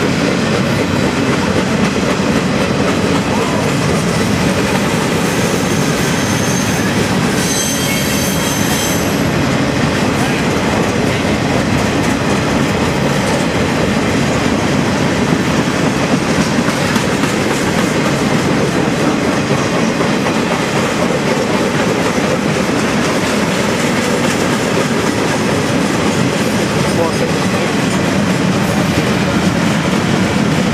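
CSX freight cars rolling past, a steady rumble of wheels on rail with clacking over the joints. A brief high-pitched wheel squeal about eight seconds in.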